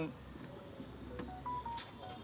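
A quick run of faint electronic beeps, each a short single tone at a different pitch, starting about a second in.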